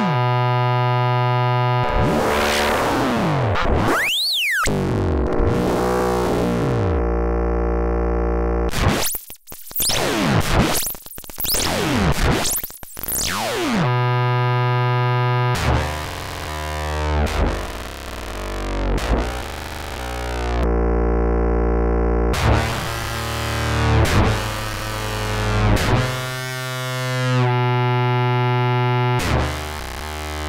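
TestBedSynth software synthesizer playing notes: sweeps that rise and fall in pitch in the first half, then long held notes, and near the end a run of notes that swell and fade about every second and a half.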